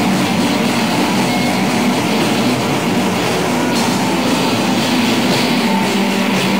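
Live experimental noise-rock band playing: heavily distorted guitar and drum kit in a loud, dense, unbroken wall of sound.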